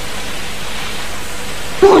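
A steady, even hiss with no pitch and no rhythm, then a voice starts speaking near the end.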